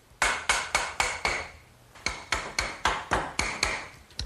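Hammer tapping the end of a galvanized steel electrical conduit pipe, driving it home through an eye bolt on the swing frame. The light blows come in two quick runs, about four a second, with a short pause between, and each carries a slight metallic ring.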